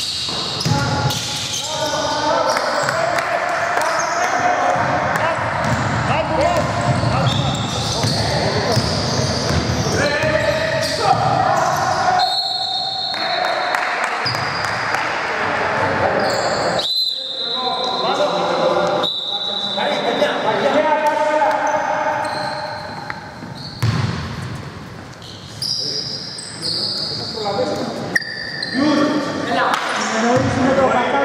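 Basketball game in a large gym hall: a ball bouncing on the hardwood floor and players' voices calling out, echoing. A referee's whistle sounds twice around the middle, as play stops for a foul call.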